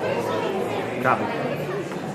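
Many people talking at once, a murmur of overlapping conversations in an audience. About a second in, one voice rises sharply above the rest.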